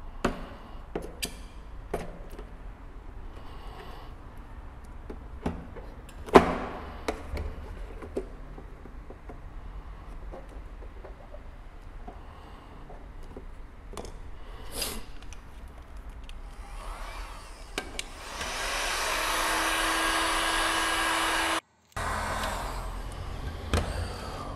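Sharp plastic clicks and snaps as a glued car headlight lens is pried from its housing with a spatula, with one loud snap about six seconds in. Near the end a heat gun blows steadily for about four seconds, a hiss with a low hum, and cuts off suddenly.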